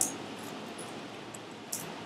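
Steady low background hiss of a recording between spoken phrases, with one brief faint click about one and a half seconds in.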